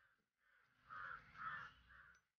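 A crow cawing faintly, three short calls about half a second apart, starting about a second in.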